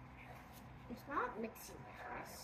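Faint scraping of silicone spatulas stirring damp homemade kinetic sand in plastic bowls. A brief faint voice comes in about a second in.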